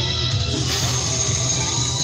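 Loud music playing over a sound truck's roof-mounted loudspeakers, with a steady low hum underneath.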